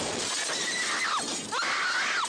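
Amateur phone recording of a warehouse explosion's aftermath: a loud, sustained rush of noise with glass shattering as the blast wave hits, and high-pitched cries rising and falling over it.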